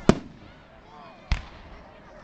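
Aerial firework shells bursting: two sharp bangs, the first just after the start and the loudest, the second a little over a second later.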